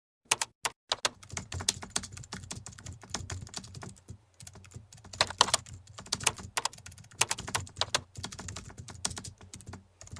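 Keyboard typing sound effect: a few separate keystrokes, then fast, uneven runs of key clicks with short pauses, sounding as on-screen text is typed out.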